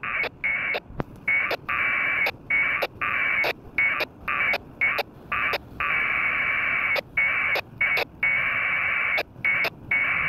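2 m packet radio data, 1200-baud AFSK, sounding from a handheld radio as a string of buzzy two-tone bursts. The bursts run from a fraction of a second to over a second, with short gaps and clicks between them as the stations key up and drop. This is the back-and-forth exchange of frames in a Winlink session with a gateway, with the mail being transferred.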